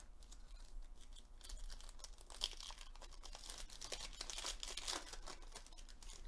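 Foil trading-card pack crinkling and tearing open by hand, faint, with the crackle busier in the second half.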